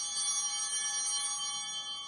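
A bell struck once, its many high overtones ringing on and slowly fading.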